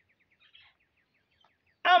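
Faint bird chirping: a quick, even run of short high chirps. A man's voice starts loudly near the end.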